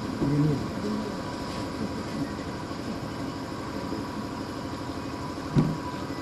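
Steady background noise of an outdoor stage event heard through the sound system, with a faint steady hum. There are brief faint voices in the first second and a single thump about five and a half seconds in.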